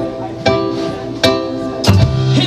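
Live rock band's song intro: a keyboard plays the same sustained chord struck about every 0.8 seconds, three times. Just before the end, a drum hit and the bass come in.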